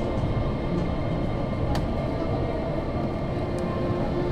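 Disney Resort Line monorail running, a steady rumble heard from inside the car, with one sharp click just under two seconds in.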